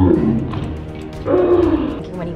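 A man laughing hard in loud bursts, near the start and again about halfway through, over background music.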